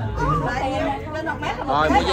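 Several people talking at once in Vietnamese, with overlapping chatter.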